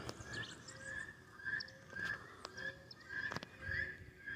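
Faint bird calling, repeating a short high chirp about three times a second, with a couple of sharp clicks of handling.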